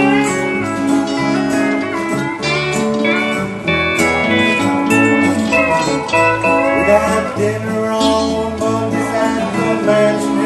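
A country band's instrumental break between verses, led by pedal steel guitar, over acoustic guitars and bass.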